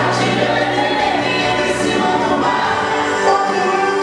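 Gospel worship song: a choir singing sustained notes over instrumental accompaniment.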